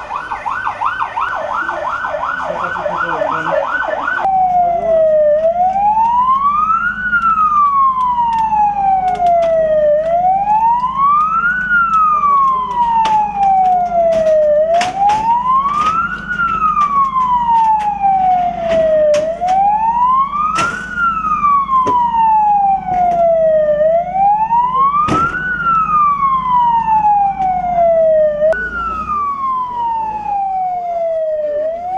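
Ambulance electronic siren. A fast yelp runs for about the first four seconds, then it switches to a slow wail, rising and falling about every four and a half seconds. Under it is a steady low hum and a few sharp knocks.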